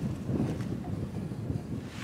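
Wind buffeting the microphone, a low rumble.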